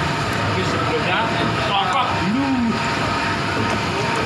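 Water sloshing and splashing in a basin as a duck carcass is worked by hand, over a steady rushing noise, with a voice talking briefly in the middle.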